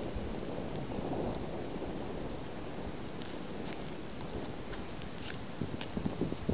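Wind buffeting the camera's microphone: a steady low rumble, with a few faint ticks in the second half.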